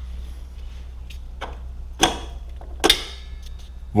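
A steel bolt being pulled out of a motorcycle's rear suspension linkage pivot, giving a few short metallic clicks, the two loudest about two and three seconds in, the last with a brief ring. A steady low hum runs underneath.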